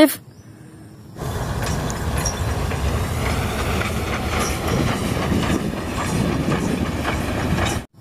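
Steam locomotive running along the track: a steady clattering, hissing train noise that starts about a second in and cuts off abruptly just before the end.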